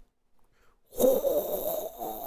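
A man's raspy, hissing mouth sound effect, starting about a second in and lasting about two seconds, imitating his congested nose suddenly starting to run when he sits up in the morning.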